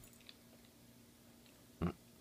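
A dog quietly mouthing and chewing a split cherry tomato, with a few small wet clicks and one short, much louder sound near the end.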